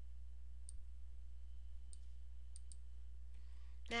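Faint computer mouse clicks: four in all, spaced about a second apart at first, the last two close together, over a steady low hum.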